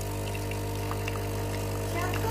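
Automatic espresso machine's pump humming steadily as coffee streams from its twin spouts into a mug.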